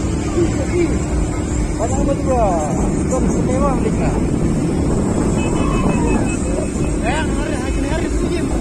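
A moving vehicle's engine and road noise, steady throughout, with people's voices heard in short bursts several times over it.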